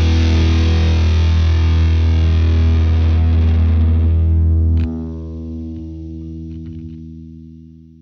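Closing chord of a distorted rock song, held and ringing. About five seconds in the low end cuts off with a click, and the remaining notes fade away.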